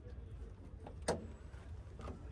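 A car bonnet's latch clicking open once about a second in as the hood is raised, over a faint low rumble.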